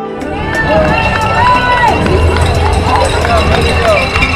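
Roadside spectators cheering and calling out to passing marathon runners, several voices shouting over one another, over a low steady rumble.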